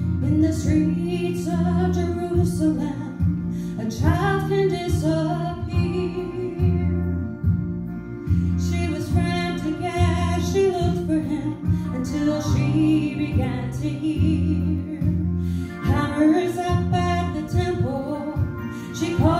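A woman singing a gospel song through a microphone over instrumental accompaniment, with a steady bass line under sung phrases.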